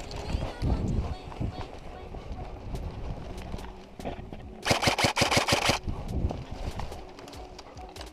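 Airsoft rifle fired in a rapid full-auto burst of about a second, a fast string of sharp cracks, a little past the middle; scattered single shots around it.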